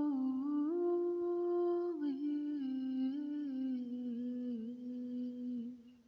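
A man humming a slow wordless melody in long held notes. The tune steps up about a second in, drops back near two seconds, then settles lower and fades out near the end.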